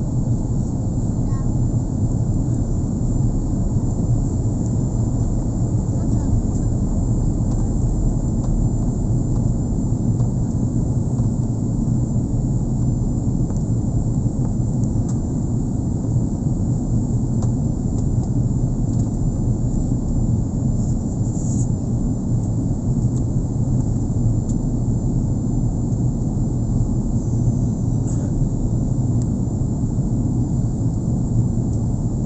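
Steady low rumble of a jet airliner's cabin in descent: engine and airflow noise heard from a window seat, with a thin high whine above it.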